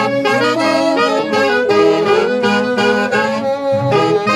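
A section of alto and tenor saxophones playing a melody together in harmony, with a harp accompanying. The notes change several times a second over held lower notes.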